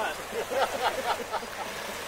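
Several people laughing and chattering right after a loud group shout, in short quick bursts that fade off.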